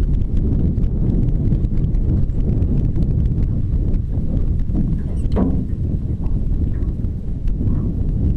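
Wind buffeting the microphone, heard as a steady low rumble, with many light clicks and knocks scattered through it and one brief falling squeak about five seconds in.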